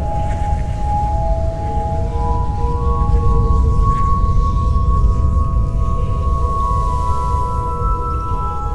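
Rubbed wine glasses (a glass harp) sounding several overlapping, long-held pure tones, with new, mostly higher notes joining one after another, over a low rumbling drone.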